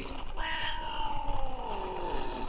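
A cat's single long, drawn-out yowl that slowly falls in pitch, starting about half a second in. It is the sound of an angry female cat, annoyed by the kittens around her.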